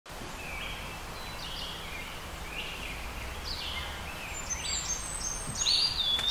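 Woodland ambience: several birds chirping and calling over a low steady background rumble, the calls growing busier toward the end.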